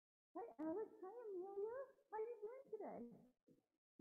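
A high-pitched voice speaking in a lilting, sing-song tone, starting a moment in and breaking off shortly before the end.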